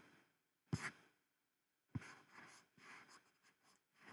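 Two faint clicks from computer input, about a second apart, the second followed by a soft breath; otherwise near silence.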